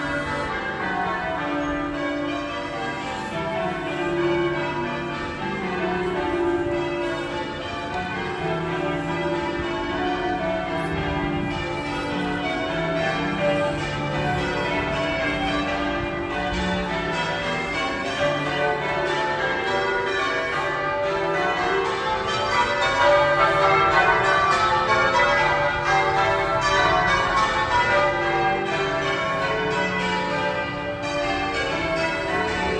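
Cathedral tower bells ringing a peal, many bells struck one after another in quick, overlapping succession without a break.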